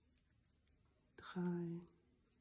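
Soft, faint clicking of wooden double-pointed knitting needles, with a woman's voice saying one counted stitch number ("drei") about a second and a half in.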